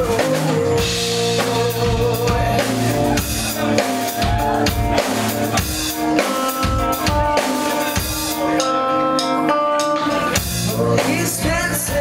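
Live rock band playing: a drum kit beat with bass drum and snare hits under held guitar chords.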